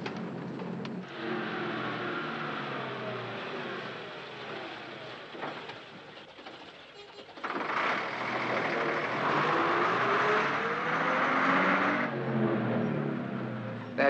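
Leyland single-deck bus engine running, its pitch falling and rising as it changes speed. About seven seconds in it comes in suddenly louder, with a hiss over it and the engine note climbing.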